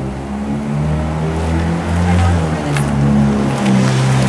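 Motor vehicle engine running close by on the street, a loud low rumble whose pitch shifts up and down several times.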